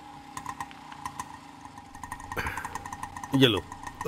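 A Bajaj RE auto-rickshaw's small engine idling at a standstill with a steady, even beat.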